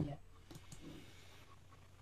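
A brief spoken 'yeah', then low room tone over a video-call microphone with a couple of faint clicks about half a second in.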